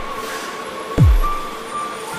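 Slow electronic music: a deep kick drum whose pitch drops away, struck once about halfway through, over held high tones.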